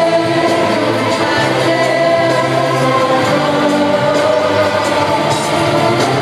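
Live concert music heard from inside the audience: loud, steady held notes with singing voices over them, the opening of a song before the rapping begins.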